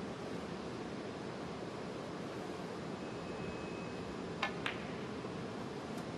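A quiet snooker arena under a steady hiss. About four and a half seconds in come two sharp clicks of snooker balls, a quarter of a second apart: the cue tip striking the cue ball, then the cue ball striking the object ball for a pot.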